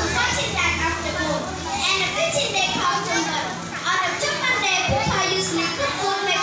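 A young girl speaking steadily into a handheld microphone.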